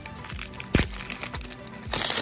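Foil wrapper of a Pokémon TCG booster pack being torn open and crinkled by hand, with one sharp rip about three-quarters of a second in.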